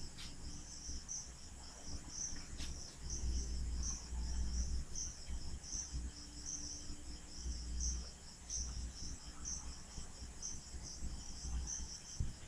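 Crickets chirping in the background in a regular rhythm, about two high chirps a second, over a low hum.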